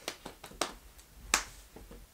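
Several light, sharp hand claps at uneven intervals, the loudest about a second and a third in.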